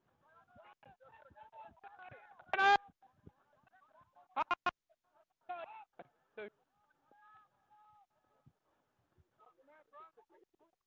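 People shouting on the sideline over a low murmur of voices. One loud drawn-out yell rises in pitch about two and a half seconds in, three short sharp shouts follow in quick succession about two seconds later, and a couple more calls come soon after.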